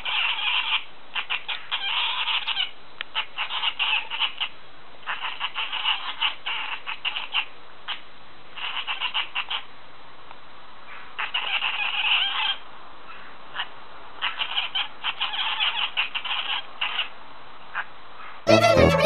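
A long-haired colourpoint cat making rapid, clicking chirps in bursts of about a second, with short pauses between: cat chattering.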